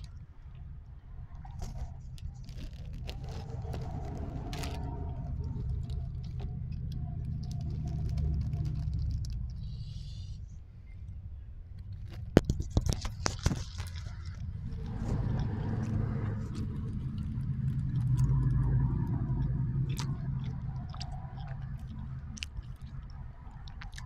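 A person chewing cheese curds close to the microphone, in long swells of mouth noise. A burst of sharp clicks comes about halfway through.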